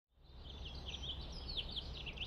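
Small birds chirping rapidly, many short chirps over a low steady hum, fading in from silence at the very start.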